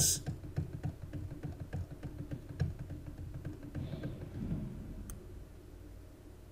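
Faint, irregular clicks and short low knocks of a computer keyboard and mouse being worked, fading toward the end, with one sharper click about five seconds in.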